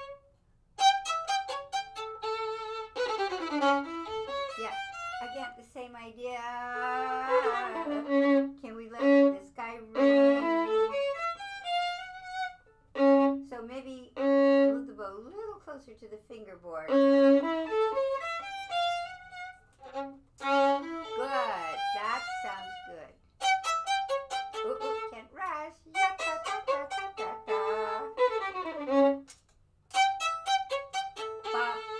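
Solo violin playing phrases of notes with vibrato, broken by short pauses.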